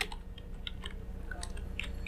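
Computer keyboard typing: a few quiet, scattered keystrokes over a steady low hum.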